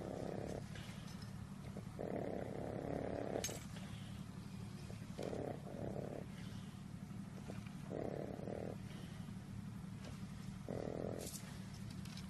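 A long-haired pet's low, steady rumbling, with a louder moan about every two to three seconds, five in all, as a lump on its skin is squeezed.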